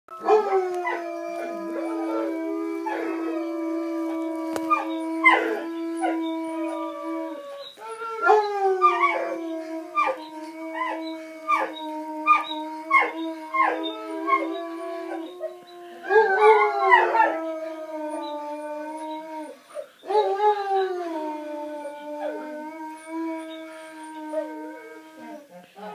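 Four long, drawn-out howls in a row, each starting a little higher and then settling onto a steady held pitch for several seconds.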